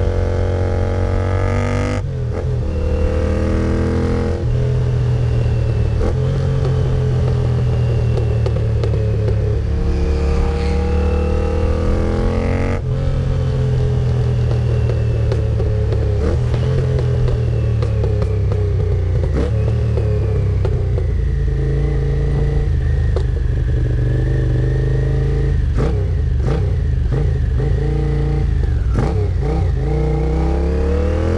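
Honda CX 650 cafe racer's V-twin engine and exhaust on the road, the engine note climbing as it pulls and then dropping, several times over, as the bike accelerates through the gears and eases off.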